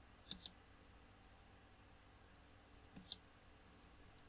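Two computer mouse clicks, one just after the start and one about three seconds in. Each is a quick pair of ticks as the button is pressed and released. Near silence in between.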